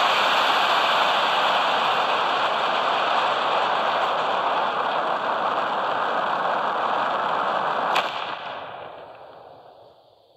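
Rocket engine noise at lift-off: a loud, steady rushing, with a sharp crack about eight seconds in, after which it fades away over the last two seconds.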